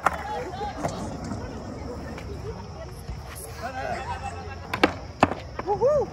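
A skateboard thrown down onto concrete with a sharp clack, its wheels rolling with a low rumble, then two more sharp clacks about half a second apart near the end.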